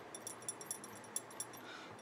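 Faint scratchy ticks of a bone folder rubbing and pressing paper into a glued chipboard corner.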